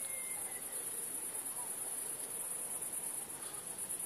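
Crickets chirping steadily at night, a continuous high-pitched trill.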